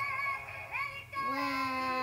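Light-up Elsa doll's recorded singing voice playing a song through its small speaker, in long held notes with a short break a little before the second note begins.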